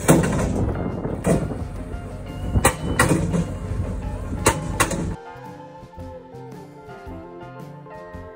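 Skid-steer-mounted SM40 hydraulic post driver hammering a steel fence post, with a few loud strikes over the machine's running noise; it cuts off suddenly about five seconds in. Background music runs underneath and carries on alone afterwards.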